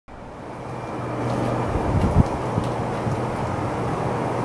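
Steady low rumble of outdoor background noise, fading in over the first second, with a couple of low thumps about two seconds in.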